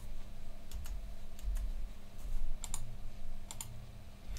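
Computer mouse and keyboard clicks at a desk: about four quick pairs of sharp clicks, roughly a second apart, over a faint steady electrical hum.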